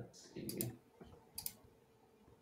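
Sharp clicking at a computer: two quick double clicks, about a second apart.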